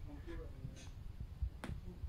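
A faint voice in the first half second, then a single sharp click about one and a half seconds in.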